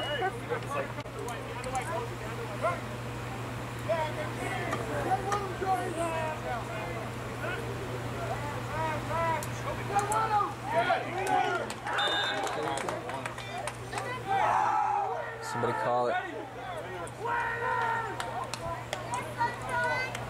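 Indistinct voices at a football game: scattered talk and calls from people around the field, with louder shouting in the second half, over a steady low hum.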